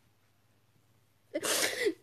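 A woman who is crying lets out a short breathy, voiced sob about a second and a half in, after near silence.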